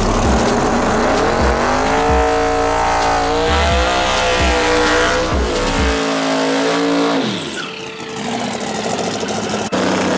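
A drag-race Ford Mustang's engine revving up and held at high rpm while it spins its rear tires in a burnout, pitch dipping briefly once, then falling away as it comes off the throttle about seven seconds in.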